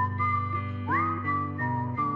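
A whistled melody, one clear high line that slides up into a held note about halfway through and then steps down, over strummed guitar chords in a slow song.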